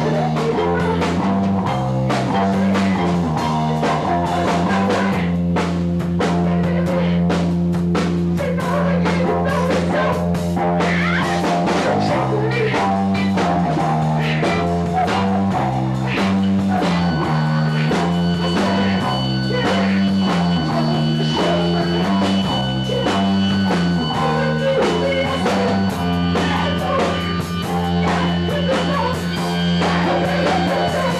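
Live rock band playing an instrumental passage: a repeating bass-guitar line under drums and guitar. About halfway through, a steady high held tone joins in.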